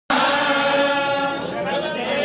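Group of Hindu priests chanting a blessing together, in long held tones that shift pitch near the end.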